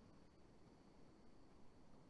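Near silence: faint steady background hiss with a faint, steady high tone.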